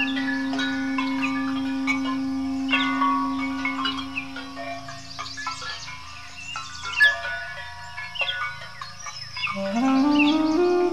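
Armenian duduk holding one long low note that fades away about seven seconds in, then rising into a new phrase just before the end, over ringing bell-like chimes and chirping birds. A sharp clank sounds about seven seconds in.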